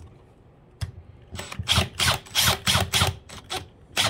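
Cordless drill driving a longer replacement screw through a trailer window ring into a drilled-out hole. There is one click about a second in, then a run of short pulses about four a second, lasting about two seconds.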